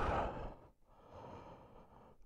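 A man's sigh: a voiced breath out that falls in pitch and fades into breathy noise within about half a second, followed by a faint hiss.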